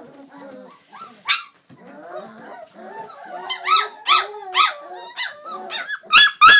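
Old English Sheepdog puppies yapping and whining, with one sharp high yap about a second in and a run of yaps at roughly two a second from about three and a half seconds in.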